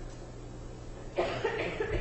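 Faint steady room hum, then a little over a second in a person coughs once, a sudden rough noise lasting under a second.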